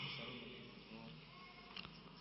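Faint steady buzzing hum in the background of a microphone recording during a pause in speech, with a small click near the end.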